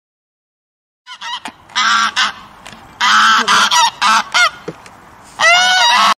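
Bar-headed geese honking: several bursts of nasal honks, starting about a second in.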